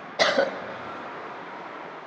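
A woman's short cough, in two quick pulses about a quarter second in; it is the loudest sound here. A faint steady noise carries on after it.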